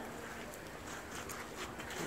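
Faint, steady outdoor background noise of a city square with a few soft clicks or crunches scattered through it.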